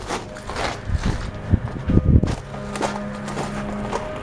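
Footsteps of a person walking, with a few heavier low thumps about a second to two seconds in. A steady low hum joins from about halfway.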